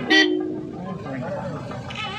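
A vehicle horn gives one short toot, about half a second long, just after the start, over the chatter of a crowd.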